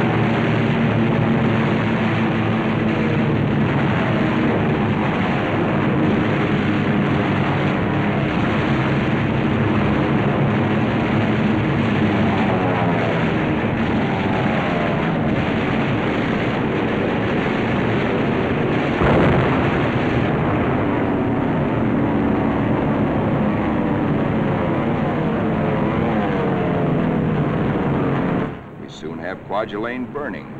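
Piston warplane engines running loud, their pitch sliding up and down as the planes dive, with one sharp bang about nineteen seconds in. The sound drops away suddenly a second or so before the end.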